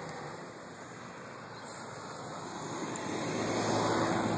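Steady hiss of passing road traffic, faint at first and slowly growing louder toward the end.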